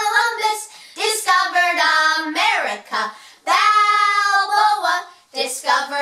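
A woman and children singing together unaccompanied, a simple tune in long held notes with a short break near the end.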